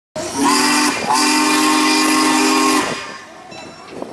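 Steam locomotive whistle: a short toot and then a long blast of nearly two seconds, several notes sounding together, before it cuts off and fades.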